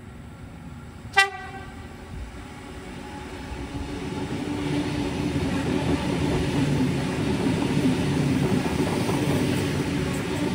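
Sydney Trains double-deck electric train giving one short horn toot about a second in. Its rumble and wheel noise on the rails then build up as it comes close and passes.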